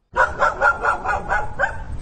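A dog barking, a quick run of short barks at about four a second.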